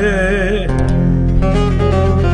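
Turkish folk song (türkü): a male voice holds a wavering note that ends well under a second in, then plucked bağlama and the backing instruments carry on over a steady low accompaniment.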